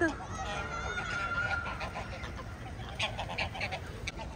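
A flock of geese honking and calling: a held call about half a second in, then a cluster of short honks near the end.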